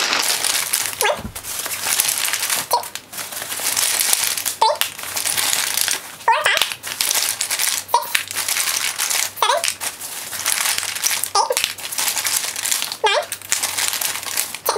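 Hands rummaging in a cloth bag of lipsticks: stop-start rustling and crinkling, broken by short pauses every second or two.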